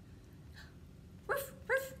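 Two short, high yipping barks like a small dog's, about half a second apart, starting just over a second in.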